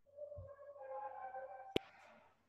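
Faint electronic chime: a few pure tones, a lower one then higher ones stepping up in pitch, followed by a sharp click near the end.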